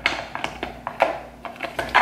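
Plastic food processor work bowl knocking and clicking against the motor base as it is seated and twisted to lock, about five sharp knocks over two seconds.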